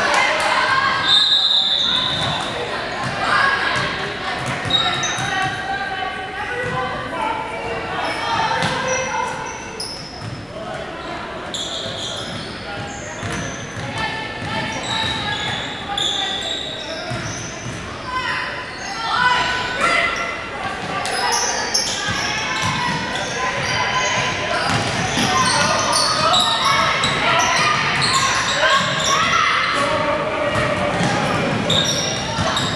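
Basketball game in a large gym: a ball bouncing on the hardwood court amid players' and spectators' voices, with a few brief high squeaks, all echoing in the hall.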